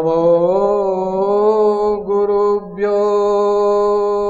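A man chanting a mantra in long, steady held notes, resonant and slowly sustained, with a short pause for breath about two and a half seconds in before the note is taken up again.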